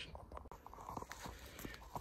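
Quiet footsteps crunching through dry fallen leaves and twigs on a forest floor: an irregular run of small cracks and rustles.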